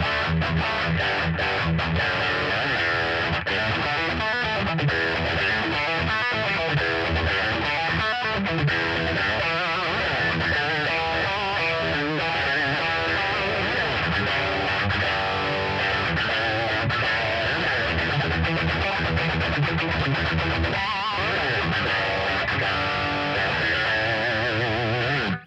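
Distorted electric guitar played through a Zoom G3Xn multi-effects processor and amp, a continuous run of riffing with wavering, vibrato-like notes near the end.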